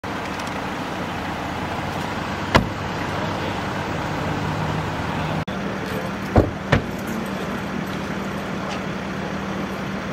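Steady low hum of idling vehicle engines, with three short knocks: one a few seconds in and two close together a little past the middle.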